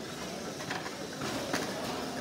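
VEX competition robots driving on a foam-tile field, heard as a steady noisy background with a few scattered clicks and knocks.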